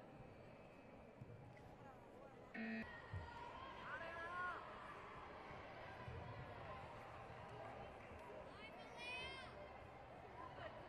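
Faint sports-hall ambience with distant voices and shouts. A short electronic tone sounds about two and a half seconds in.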